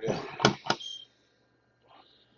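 Cardboard trading-card box being handled, a short rustle followed by two sharp clicks about a quarter second apart, then quiet.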